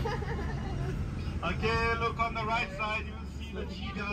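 Steady low engine and road rumble heard inside a moving minibus cabin. Passengers' voices sound over it, with one high-pitched voice calling out from about a second and a half in to about three seconds.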